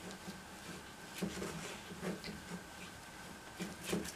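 Faint rustling and scratching of tulle netting being handled and braided by hand, with a few soft rustles about a second in, about two seconds in and near the end.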